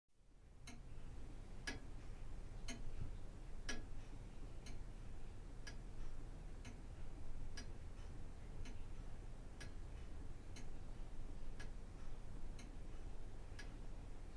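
Longcase clock ticking steadily, about once a second, over a low steady hum.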